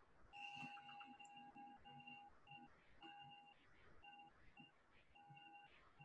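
Near silence with faint, short electronic beeps at one fixed pitch, repeating unevenly: the sound of an on-screen name-picker wheel as it spins.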